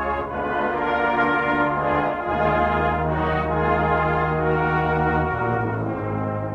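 Brass band playing the slow opening of a pop ballad: long held chords, moving to a new chord about two seconds in and again near the end.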